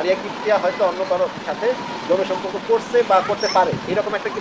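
Speech only: a person talking continuously in Bengali over a steady background hiss.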